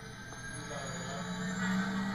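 Television audio between speakers: a low steady hum that slowly grows louder.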